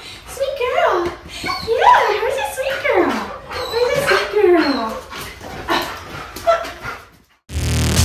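A young shepherd dog whining and yelping in a series of rising and falling cries, some sliding steeply down in pitch. Electronic music with a beat cuts in near the end.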